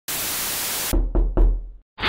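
Logo sound effect: an even hiss for nearly a second that cuts off suddenly, then three heavy knocks with a deep boom, about a quarter second apart, dying away.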